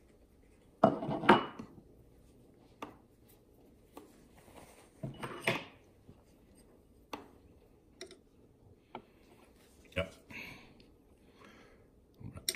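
Scattered metal clinks and knocks of hand tools being handled, the loudest two close together about a second in, then lighter clicks spread over the rest.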